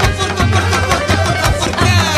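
Flamenco instrumental passage: Spanish flamenco guitar strummed in a quick, percussive rhythm with hand-clapping (palmas) over a steady low bass.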